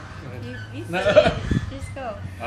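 Brief laughter among people talking, loudest about a second in, over a steady low hum.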